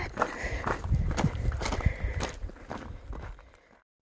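Footsteps of a hiker walking up a rocky dirt trail, about two steps a second, fading out and stopping shortly before the end.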